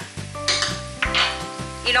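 Chopped onion and garlic sizzling in olive oil in a frying pan, with a spoon scraping and stirring in the pan as flour goes in. There are two short louder bursts in the first half.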